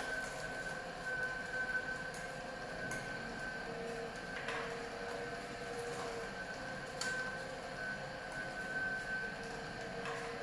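HH-916F slow juicer running steadily with a constant high tone as its auger crushes almonds, with a few short sharp cracks along the way.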